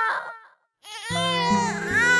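A newborn baby crying in long wails, which break off for a moment about half a second in. The crying starts again, and music with a regular beat comes in under it about a second in.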